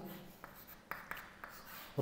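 Chalk writing on a chalkboard: a few faint taps and scrapes as the stick strikes and drags across the board.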